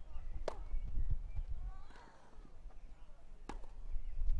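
Tennis ball struck twice by a racket during a rally on a grass court, two sharp pops about three seconds apart. A fainter, brief voice sound comes between them, over a low steady rumble.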